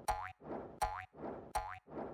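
Cartoon sound effect played three times, about three-quarters of a second apart: a short rising whoosh ending in a springy boing that glides up in pitch. Each marks a picture frame popping onto the screen.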